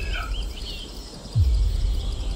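Short bird chirps over a steady low rumble, then one deep boom that drops in pitch about one and a half seconds in: a background soundtrack of birdsong with a slow, repeating bass beat.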